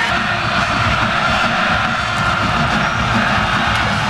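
Steady stadium crowd noise in a televised college football game, an even wash of sound with no single event standing out.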